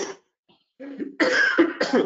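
A man coughing: a short cough right at the start, then a run of rough coughs from about a second in.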